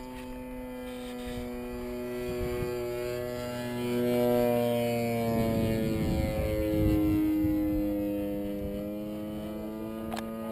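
Large 2.6 m radio-controlled P-51 Mustang model flying overhead: a steady drone from its motor that grows louder about four seconds in, then drops in pitch as the plane passes by.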